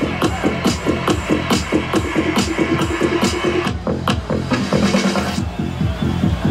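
Electronic dance music played live by a DJ from a controller through a PA system, with a fast, steady beat.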